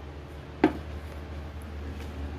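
A single short knock about two-thirds of a second in, over a steady low hum.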